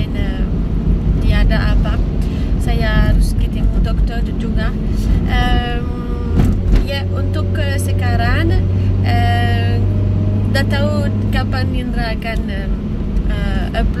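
Steady engine and road rumble of a moving car heard from inside, under a voice talking. A steady low hum sets in about seven seconds in and stops near twelve.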